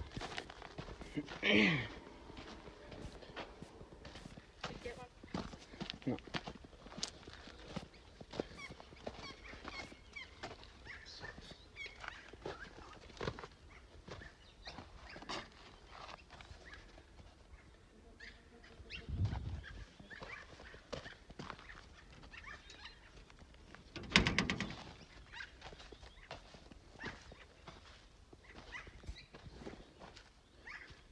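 Footsteps on dry ground littered with twigs and dry grass, with many small clicks and rustles of handling. A man coughs about two seconds in, and there are a couple of louder knocks later on.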